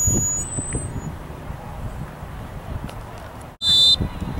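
Wind buffeting the microphone, then a short, loud, shrill referee's whistle blast near the end, signalling kickoff.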